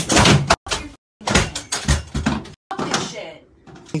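A pedestal fan being smashed: loud bangs and clatter, with a raised voice over them. The sound drops out abruptly twice in the first second or so.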